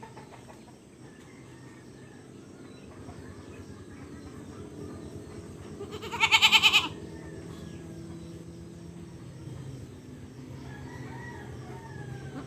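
A goat bleats once, loudly, about six seconds in: a short, wavering call under a second long.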